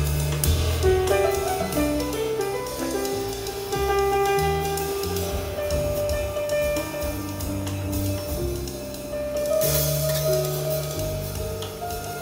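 Live free-jazz trio playing: upright bass moving through low notes under piano and drum kit, with a brighter burst of cymbals near the end.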